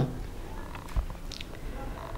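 A pause between spoken phrases: a low, steady background rumble with a faint breath-like hiss and a soft click about a second in.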